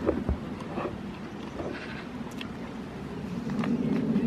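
Adult goat licking and nibbling at a hand: a few faint, short clicks and mouth noises over a steady low background noise.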